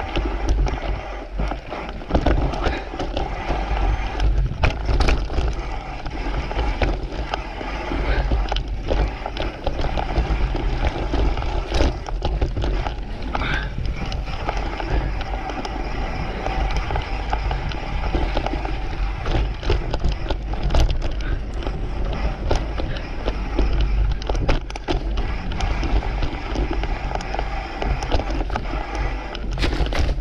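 Mountain bike riding down a dirt singletrack: tyres rolling over the dirt, steady wind on the microphone, and frequent rattles and knocks from the bike over bumps.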